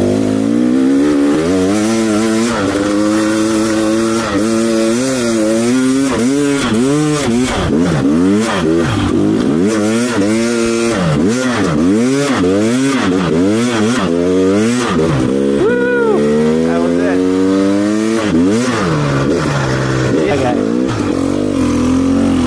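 KTM 300 XC TPI single-cylinder two-stroke dirt bike engine being ridden, its pitch rising and falling with the throttle roughly once a second for several seconds, then climbing and holding higher before dropping back near the end.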